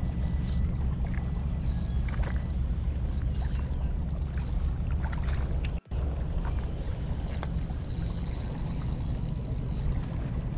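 Wind buffeting a body-worn camera's microphone as a steady low rumble, with faint scattered clicks from handling the spinning rod and reel. The sound cuts out for an instant just past halfway.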